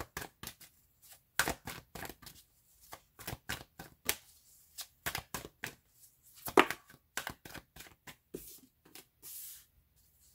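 A tarot deck being shuffled by hand: a run of quick, irregular snaps and taps of cards slapping together, with one sharper snap about two-thirds through and a brief swish near the end.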